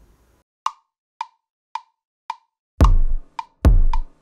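A metronome-like count-in of four short, even clicks about half a second apart. Then, from near the three-second mark, a deep kick-drum one-shot sample is played twice from a keyboard in GarageBand's iPad sampler while the clicks keep time.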